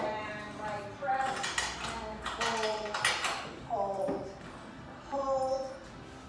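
Metal clinking and clanking from Pilates reformer springs and fittings, strongest in the middle, with talk underneath.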